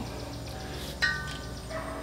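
A steady low hum, with a brief bell-like ring of a few clear tones starting suddenly about a second in and fading away.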